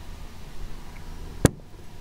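A single sharp click about one and a half seconds in, over a faint steady low hum.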